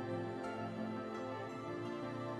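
Background music with slow, held notes.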